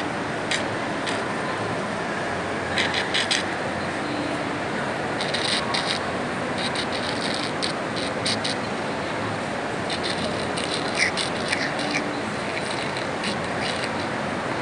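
Steady background noise of a large indoor shopping mall, with repeated bursts of short scratching clicks, handling noise of fingers brushing the phone near its microphone, a few times over the stretch.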